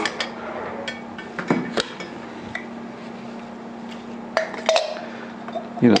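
Light clicks and knocks, scattered and irregular, of an SMC air filter-regulator and its bowl being handled and taken apart on a tabletop.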